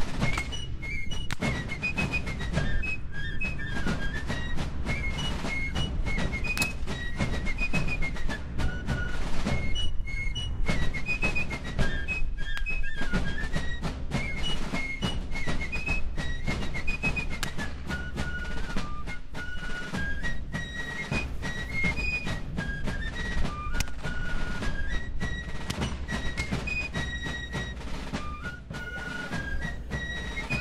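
Fife and drum music: a high fife melody stepping up and down over steady drumbeats.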